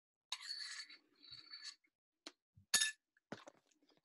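Metal spoon scraping and clinking against a ceramic bowl during eating: two scrapes with a faint ringing tone in the first two seconds, then a few sharp clinks, the loudest just under three seconds in.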